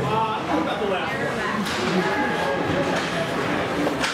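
Spectators' voices calling out and talking over one another, echoing in an indoor ice rink, with one sharp knock about one and a half seconds in.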